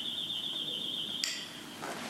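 Apartment doorbell ringing: one steady high electronic tone lasting about a second and a half, shifting briefly to a different tone just before it stops.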